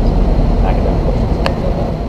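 A loud, steady low rumble of outdoor background noise, with a single sharp click about one and a half seconds in.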